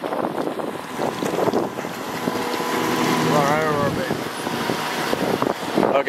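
Outboard motorboat running past at speed, its engine drone building to a peak about three to four seconds in, over wind and water noise.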